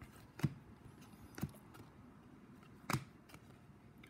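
A stack of trading cards flipped through by hand: three sharp clicks as card edges snap against each other, spread over a few seconds, the last the loudest.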